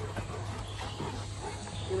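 Several large dogs milling about close by, with faint scuffling sounds over a steady low hum.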